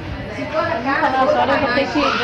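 Only speech: people talking in Portuguese conversation, with voices overlapping.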